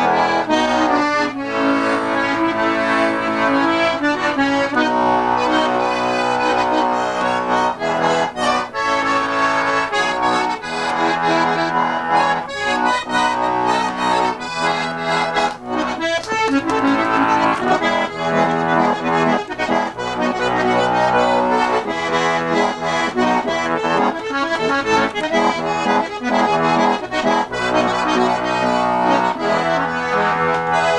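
Button accordion played solo: a traditional dance tune, quick melody notes over a steady bass-and-chord rhythm, in a style blending Québécois fiddle-tune playing with an Ottawa Valley lilt and Cajun tradition.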